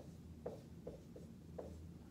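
Dry-erase marker writing on a whiteboard: about five short, faint strokes in two seconds.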